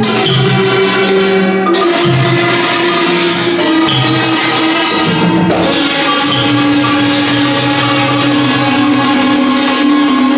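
Thai classical ensemble music: khim hammered dulcimers and ranat xylophones struck with mallets in a continuous melody, with drum accompaniment.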